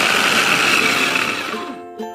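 Electric mini food chopper running, its blades grinding red chilies, garlic and shallots with a little water into a coarse paste. The motor winds down and stops shortly before the end, over background music.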